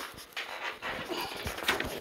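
Rustling, breathy noise close to a tablet's microphone with a few small knocks, as the tablet is handled and swung around; it comes in uneven bursts and is loudest in the second half.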